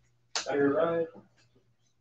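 A short spoken phrase from a player, then quiet room with a faint steady low hum.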